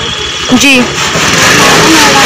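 A road vehicle passing close by: loud, steady engine and road noise that swells about a second in and holds, with a woman's brief word just before it.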